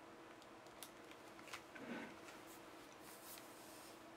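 Near silence: faint room tone with a few small clicks and soft handling rustles, one a little louder about two seconds in.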